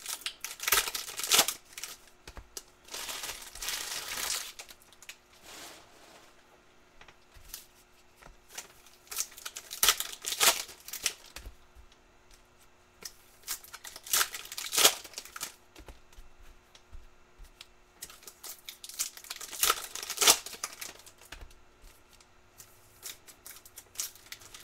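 Foil trading-card pack wrappers being torn open and crinkled by hand, in about five bursts of crackling a few seconds apart with quieter handling between.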